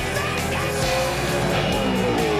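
Backing music mixed with a Gen 3 Supercars Chevrolet Camaro's V8 racing past on the circuit, its engine note rising and then falling.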